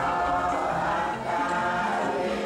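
Buddhist chanting by a group of voices in unison, held on long sustained notes that shift in pitch every half-second or so.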